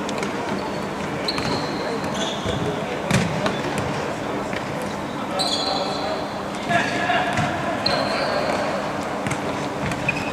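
Futsal being played in a large indoor hall: the ball kicked and bouncing on the court, with sharp knocks (one loudest about three seconds in), several brief high squeaks and players' indistinct shouts echoing around the hall.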